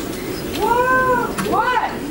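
Flute played live over a quiet band bed, sliding up and down in short swooping pitch bends that sound somewhat like meows: one longer swoop about half a second in and a shorter one near the end.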